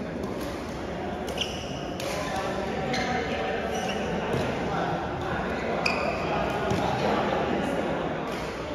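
Badminton rally in a large hall: rackets strike the shuttlecock in sharp hits every second or so, with a few short squeaks of shoes on the court floor, over a steady background of voices.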